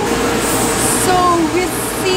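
Indistinct voices over a steady background hiss, with short gliding vocal sounds in the middle and brief sharp hissy sounds about half a second in and near the end.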